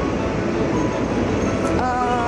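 Steady road-traffic rumble from the street, with a city bus passing close by. A voice briefly sets in near the end.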